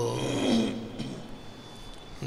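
A man's chanting voice breaking off at the end of a line with a short, falling, breathy sound about half a second in, then a quiet hush with a faint click.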